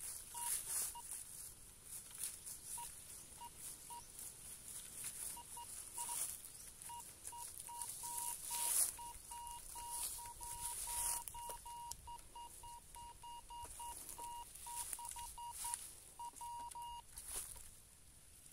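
Metal detector's audio signal: a short beeping tone that comes in chirps as the search coil is swept over the ground, sparse at first and then repeating quickly through the middle, the sign of a metal target under the coil, before it stops near the end. Faint rustles and crunches sound throughout.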